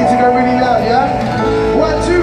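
Live pop music played through an outdoor stage sound system and heard from a distance across a crowd, with held notes and a shifting melody, mixed with the voices of people nearby.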